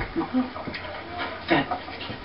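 Film dialogue playing from a television and picked up off the set: a man's quiet, halting speech in short fragments with pauses between them, one word about one and a half seconds in.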